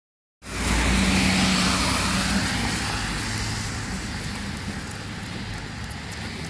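Road traffic: a car going by, with tyre hiss and a low engine hum. It is loudest just after the start and fades slowly over the following seconds.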